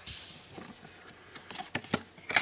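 Trading cards being handled in the fingers: faint rustling, then a few light clicks of card edges knocking together near the end.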